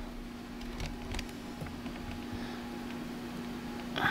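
Quiet room tone with a steady low hum, and a few faint light clicks and rustles from hands working through vermiculite substrate in a plastic tub while lifting out hatchling ball pythons.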